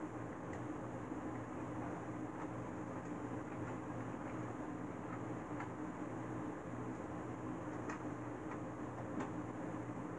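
Steady low hum and hiss of background noise, with a few faint clicks scattered through.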